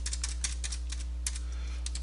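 Computer keyboard being typed on: a quick run of keystrokes that thins out after about a second and a half, over a steady low hum.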